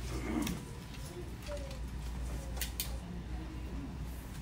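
Shop-floor background: a steady low rumble, with a brief voice near the start and a few faint clicks.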